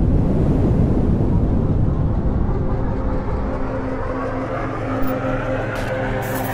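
Cinematic logo-intro sound effect: a deep rumbling swell, with steady held synth tones coming in about halfway through.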